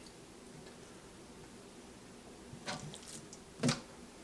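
Quiet handling on a plastic cutting board while a fillet knife trims a rockfish fillet: a few faint clicks after a couple of seconds, then one sharper tap near the end.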